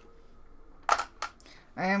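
A single sharp click about a second in, followed by two fainter ticks, as a hand handles a scrap of canvas; a woman begins to speak near the end.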